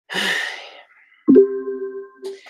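A short breathy rush of noise fades away, then a little over a second in an electronic chime starts suddenly and holds several steady tones.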